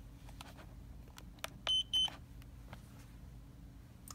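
Lumos smart bike helmet giving two short, high beeps in quick succession as its firmware update finishes. A few faint clicks sound around them.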